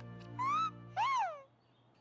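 Cartoon hummingbird chirping twice in reply: a short rising chirp, then a longer one that rises and falls. A low music bed runs under the chirps and drops out after about a second and a half.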